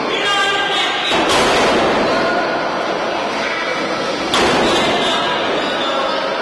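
Two heavy thuds in a wrestling ring, one about a second in and another past four seconds, each echoing in a large hall, over shouting from the crowd.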